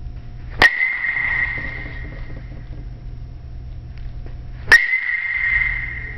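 Two balls hit off a metal baseball bat, about four seconds apart. Each is a sharp crack followed by a high ringing ping that fades over about a second.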